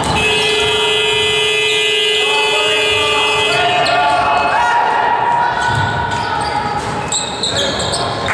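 A buzzer sounds one loud, steady tone for about three and a half seconds, then cuts off. A basketball is dribbled on the hardwood court throughout, and voices shout in the hall after the buzzer stops.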